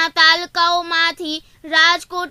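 A woman's high-pitched voice speaking Gujarati news narration in short phrases with a level, sing-song pitch and brief pauses between them.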